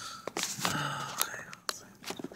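A man muttering under his breath while a phone is fumbled onto a cheap plastic phone holder, with several scattered clicks and knocks of handling.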